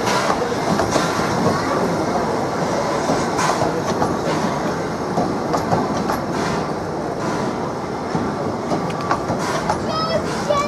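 Narrow-gauge passenger coaches rolling past, a steady rumble of wheels on the rails with occasional clicks as they run over the rail joints.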